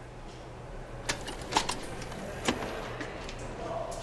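A few sharp knocks or clicks at irregular intervals, three of them plain (about a second in, half a second later, and midway through), over a low steady background noise.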